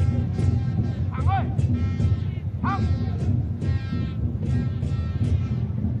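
Stadium crowd atmosphere: fans in the stands drumming steadily, with horn-like pitched calls sliding up in pitch twice.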